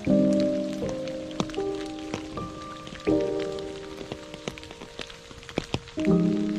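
Slow, soft background music whose sustained chords change about every three seconds, over rain falling on water with scattered raindrop ticks.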